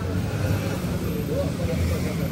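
Outdoor street ambience: a steady low rumble with faint, distant voices chattering over it.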